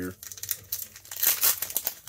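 Foil wrapper of a Goodwin Champions trading-card pack crinkling as it is torn open by hand, loudest a little past the middle.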